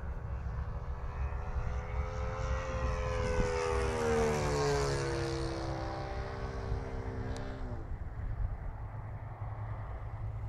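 Saito FA-125 four-stroke glow engine of a large model P-40 warplane flying past overhead. Its drone swells to loudest about halfway through, falls in pitch as the plane goes by, then drops away abruptly near the eight-second mark.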